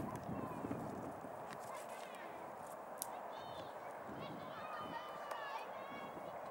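Faint, distant children's voices over steady outdoor background noise, with a single sharp click about three seconds in.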